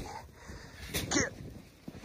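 A man's short, falling vocal exclamation a little over a second in, just after a brief crunch of a boot stepping into deep snow.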